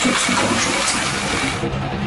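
A loud, steady rushing noise that thins out near the end.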